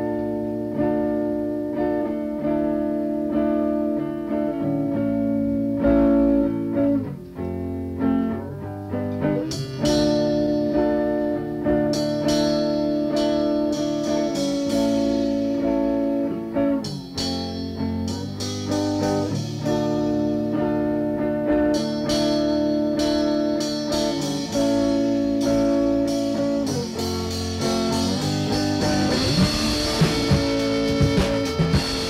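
Guitar playing the opening of a rock song from a 1980 home cassette recording. Held chords change every few seconds, and sharper strummed attacks come in from about ten seconds in.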